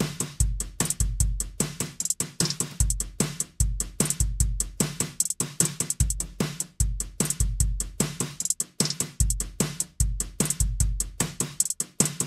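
Music: a drum beat of bass-drum thumps and snare hits under a fast, steady run of hi-hat ticks, with no melody over it.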